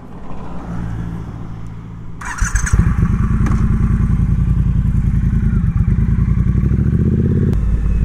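Triumph Bonneville T120's parallel-twin engine ticking over, then getting clearly louder as the bike pulls away about two and a half seconds in, just after a brief rush of noise. It then runs steadily under throttle, and the note shifts near the end.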